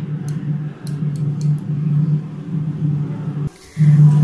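A steady low hum throughout, with a few faint light ticks in the first second or so as lentils are dropped by hand into warm oil in an aluminium pan. The sound drops out briefly near the end.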